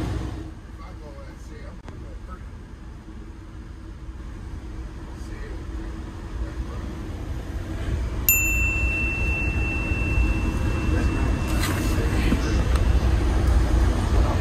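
Cabin noise inside a commuter train coach: a steady low rumble with passengers talking. About eight seconds in, a single steady high electronic beep starts suddenly and holds for a few seconds while the rumble grows louder.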